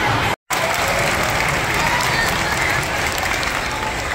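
Audience applause mixed with crowd chatter, easing off toward the end. The sound cuts out completely for a split second about half a second in.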